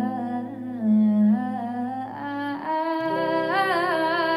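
Background song: a woman's voice humming and singing long held notes that slide between pitches, over soft, steady accompaniment.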